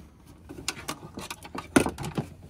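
Handling clicks and knocks from a Blue Ox Patriot 3 brake unit and its pedal claw being positioned on a car's footwell floor, several short taps with one louder knock near the end.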